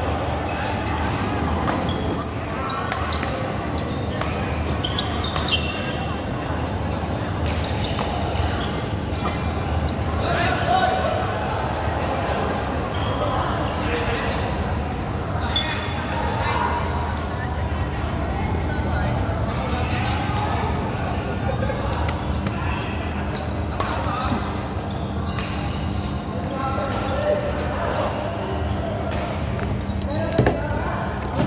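Badminton rackets hitting shuttlecocks in a rally, short sharp hits at irregular intervals, in a large indoor hall, with voices talking in the background.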